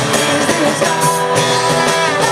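A live band playing an amplified rock-and-roll song with guitar, upright bass and drums.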